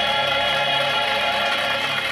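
A woman's voice holds a long final note of a gospel song over the accompaniment. The bass drops away a little over half a second in, and the sound is played back from a television.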